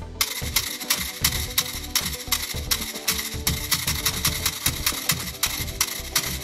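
PTFE plastic microbeads rattling inside a 3D-printed triboelectric generator pack as it is shaken by hand, a fast, even rattle about four to five strokes a second, over background music.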